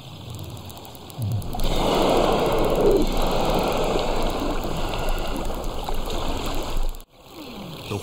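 Water splashing and rushing around a narwhal surfacing. A steady noisy wash sets in about a second and a half in and cuts off abruptly near the end.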